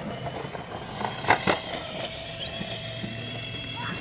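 Steady sideline ambience with a faint hum, broken by two sharp knocks about a second and a half in, a fifth of a second apart.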